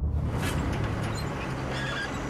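Small excavator running and digging dirt: a dense, even engine-and-digging noise, with a steady low engine hum settling in about a second and a half in.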